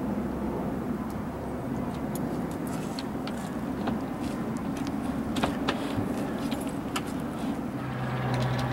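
Steady low rumble of distant traffic, with a few light clicks and knocks, about four spread through the middle and later part, as the aluminium-framed solar panel is handled onto its roof rails.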